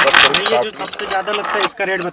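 Steel fan motor shafts clinking and rattling against one another as they are moved and spread out by hand on a table, with the loudest clatter at the very start followed by lighter clinks.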